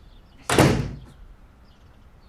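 A door slammed shut: a single loud bang about half a second in that dies away quickly.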